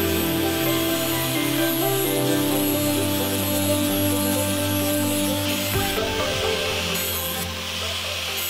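Angle grinder with a flap disc grinding a bevel onto a steel blade edge, a steady abrasive hiss, under background music.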